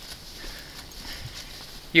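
A few faint, soft footfalls on a trail over low outdoor background noise, in a pause between words.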